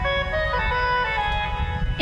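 Harmonium playing a slow melody of held notes, stepping from one note to the next, over a low rumble.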